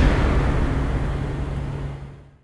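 Tail of a logo-animation sound effect: a low rushing noise with a steady low hum underneath, fading out steadily.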